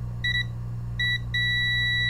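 Multimeter continuity beeper sounding across the probes on a capacitor removed from an iPhone 7 Plus logic board: a high-pitched beep, two short blips and then a continuous tone from a little over a second in. The continuity beep is the beep you get from touching the two probes together; a good capacitor should not beep, so the capacitor is shorted.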